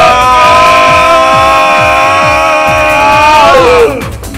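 A long, loud yell held for about five seconds, wavering slightly and sliding down in pitch as it cuts off just before the end, over electronic dance music with a steady kick drum.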